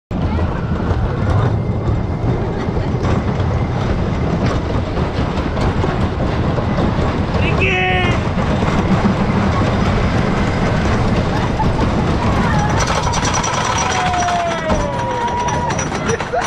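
Wooden roller coaster train rolling over its track, a steady rumble with clatter from the wheels. Near the end come high squealing tones, one held and one falling, as the train nears the lift hill.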